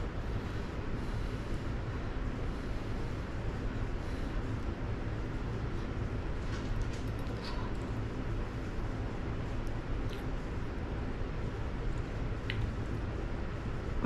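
Steady low room hum and hiss with a few faint, short clicks about halfway through and again near the end.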